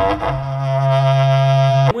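A berrante, the Brazilian ox-horn cattle-driver's horn, blown in one long, steady low note that cuts off suddenly near the end, after a short whoosh at the start.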